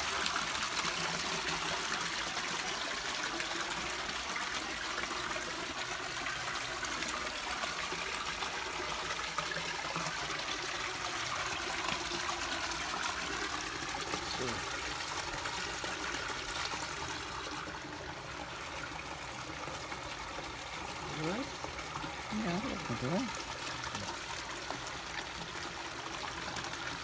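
Steady trickle of running water into a garden pond. Near the end come a few short rising and falling calls, likely from the hens.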